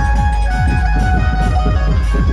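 A live dhumal band playing loudly: drum strokes about four a second, each dropping in pitch, under a sustained melody line.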